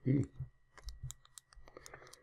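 A quick run of small, light clicks, about eight in a little over a second, from computer controls as the on-screen annotation tool is switched from eraser to pen.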